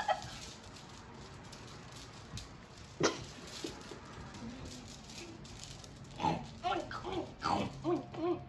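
Stifled laughter with the mouth held shut: one sharp burst about three seconds in, then a run of short, squeaky bursts near the end.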